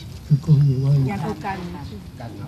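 Speech: an elderly man speaking into a microphone, one drawn-out word starting about a third of a second in.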